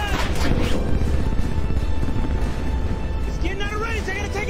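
Action-film battle soundtrack: a music score over a deep, continuous rumble, with soldiers shouting at the start and again near the end.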